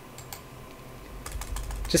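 Computer keyboard keys clicking as text is deleted in the editor: a few faint clicks at first, then a quicker run of keystrokes in the second half.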